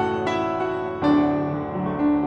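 Kafmann K121 upright acoustic piano being played: chords are struck at the start and again about a second in, then ring on and fade, in an improvisation on a Quan họ folk melody. The tone is very resonant, very bright and high.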